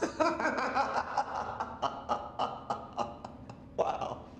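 A man laughing in a long run of short pulses, about three to four a second, with a louder burst near the end.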